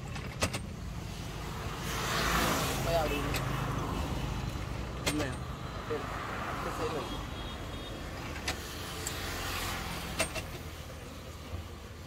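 Road vehicles passing, rising and falling twice, over a steady low hum, with a few sharp metallic clicks from a hand-lever citrus juicer being pressed.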